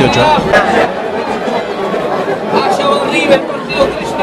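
Spectators' voices at a football ground: indistinct chatter and calls from the crowd, with no clear commentary.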